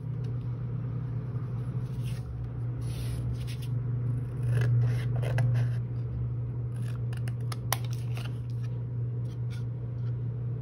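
Pencil tracing on paper, then small craft scissors cutting through white paper in a run of snips and clicks. A steady low hum runs underneath.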